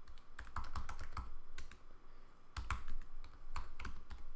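Typing on a computer keyboard: quick runs of key clicks, with a short pause a little past halfway.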